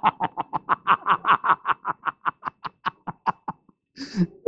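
A man laughing: a long run of short, breathy 'ha' pulses, about seven a second, that slows, fades and stops shortly before the end.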